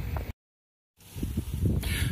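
An edit cut: about half a second of dead silence, with low outdoor background rumble and hiss before and after it.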